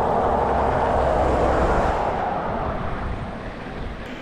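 A road vehicle driving past, its tyre and engine noise swelling to a peak about a second or two in and then fading away.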